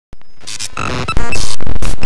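A loud, jumbled collage of chopped music and noise fragments that switch every fraction of a second, used as an intro sound effect. It jumps louder a little past a second in.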